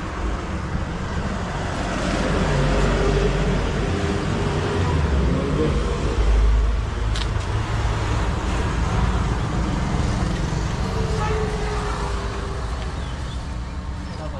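Road traffic passing close by: a steady traffic noise with a low vehicle rumble that builds and is loudest about six seconds in, then eases off.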